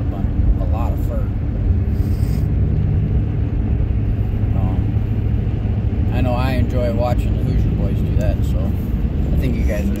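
Steady low road and engine rumble inside a moving truck's cab, with a man's voice talking over it in short stretches.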